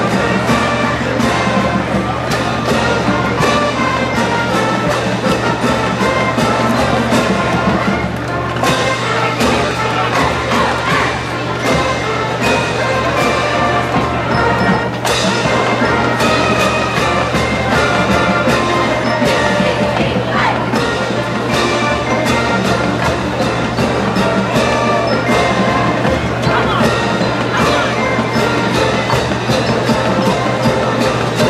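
A full marching band playing a march: brass and woodwinds sound sustained melody lines over a steady drum beat from the drumline.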